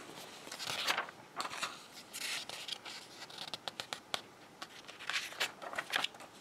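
Pages of a printed catalogue being turned by hand: a few papery swishes with light rustling and small ticks of fingers on paper between them.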